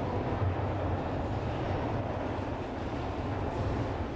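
Steady, rumbling noise of a subway train running through a tiled station.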